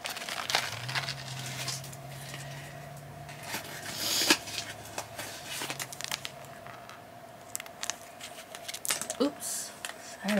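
Small plastic and paper packets crinkling and rustling as they are handled, in short irregular bursts with light clicks, while a faint steady low hum runs under the first part.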